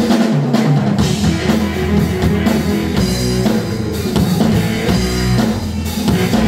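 Live rock band playing: electric guitar over a drum kit and bass guitar, with steady drum hits throughout.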